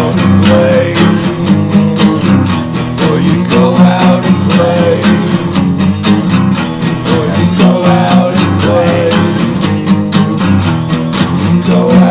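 Lo-fi, cassette four-track recorded song: acoustic guitar strummed in a steady rhythm, with a melody line curving over it every second or two.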